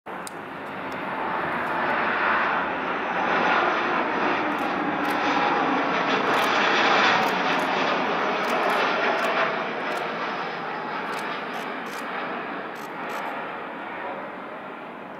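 Boeing 737 MAX 8's CFM LEAP-1B turbofan engines on landing approach: a broad jet rush that swells to its loudest about seven seconds in, then slowly fades as the airliner passes.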